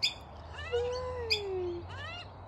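Birds calling: a sharp high chirp at the start and another just over a second in, with one long smooth note between them that slowly falls in pitch.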